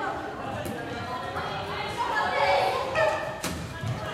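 Floorball players calling out to each other in an echoing sports hall, with a few sharp clacks of sticks striking the plastic ball and the thud of play.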